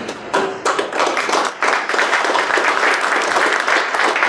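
Audience applauding: a few separate claps in the first second, then many hands clapping in a steady spatter.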